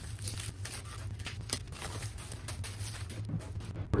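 Plastic packaging bag crinkling and rustling as a heavy metal part is worked out of it, with many irregular small crackles.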